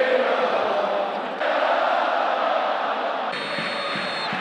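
Football stadium crowd chanting, a dense wall of voices whose sound shifts abruptly between shots. A steady high whistle tone comes in near the end.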